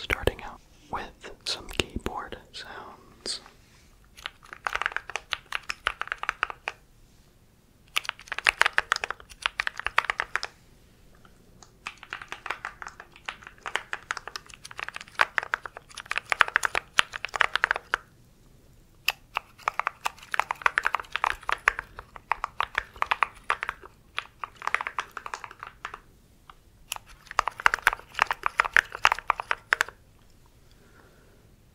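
Mechanical keyboard keys pressed in quick flurries close to the microphone: rapid clacking in runs of one to three seconds with short pauses between.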